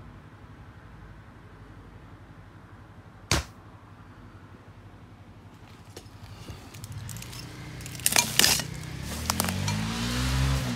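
A single short, sharp bang about a third of the way in, against a low background hush. Near the end comes a quick run of clattering and rustling: footsteps and handling noise moving through undergrowth.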